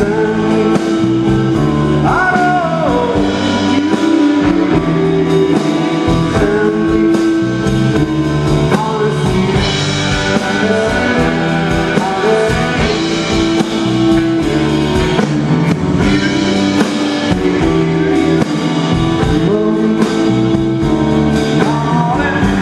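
A live rock and roll band playing with a male lead singer singing.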